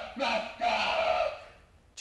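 A man yelling at the top of his voice, a strained scream in which the words are lost, in two long bursts that fade out near the end. It is a deliberately overdone yell, taken too far for comic effect.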